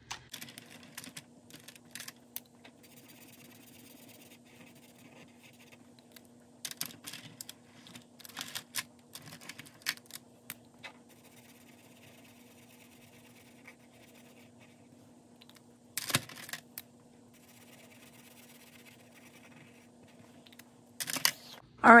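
Quiet marker-on-paper scratching as raindrop shapes on a sheet are coloured in, with scattered light clicks and taps from pens, caps and paper being handled. One sharper click comes about two thirds of the way through. A faint steady hum runs underneath.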